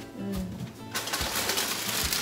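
A short hummed "uhm", then, from about a second in, crinkling of plastic grocery packaging as the next item is handled.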